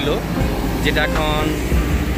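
Container truck's engine running close by, a steady low rumble under a voice.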